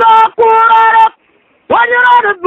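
A solo voice singing a praise song unaccompanied, in long held notes that slide between pitches, with a break of about half a second past the middle before the next phrase.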